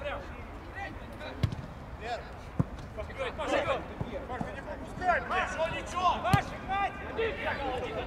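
A few sharp thuds of a football being kicked, with players' shouts and calls in between, the calls thickest in the second half.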